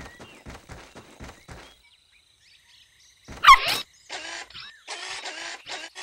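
Cartoon sound effects. First comes a quick run of light, evenly spaced taps like footsteps, about four a second, which stop a little under two seconds in. After a pause there is a loud gliding effect, then a string of short hissing bursts.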